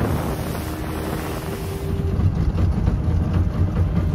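Outboard motorboat under way: a steady engine drone under the rush of water along the hull, with wind buffeting the microphone.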